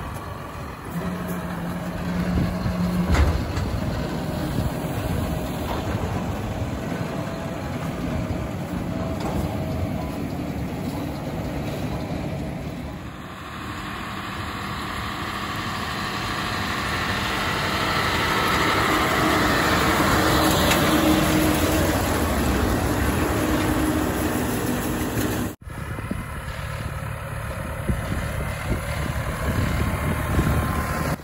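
John Deere tractor engine running while pulling a Kuhn round baler at work baling flax straw. The machine sound changes abruptly twice, about halfway through and near the end, as separate takes follow one another.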